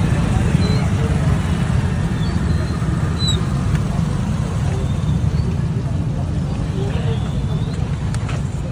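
Street traffic: a steady low rumble of motorcycle, scooter and car engines moving slowly past, with indistinct voices mixed in.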